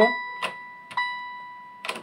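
Electronic tones from a Tom y Jerry fruit slot machine as its bet buttons are pressed to add credits to the wager: two ringing beeps about a second apart, each fading out, with a few sharp button clicks between them.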